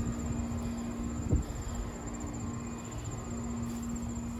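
Steady low mechanical hum over a rumble of handling and walking noise, with insects trilling in a fast, even, high-pitched pulse and a single knock about a second in.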